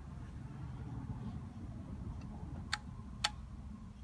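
Low handling noise as a battery pack of 18650 cells is turned over, with two sharp clicks about half a second apart a little under three seconds in.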